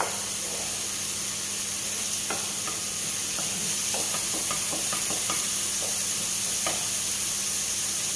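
Chopped onions and tomatoes sizzling in hot oil in a frying pan, with a wooden spatula stirring them and giving scattered short scrapes and taps against the pan.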